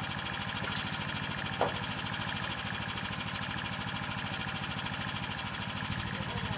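An engine idling steadily with an even pulsing drone, and one sharp knock about a second and a half in.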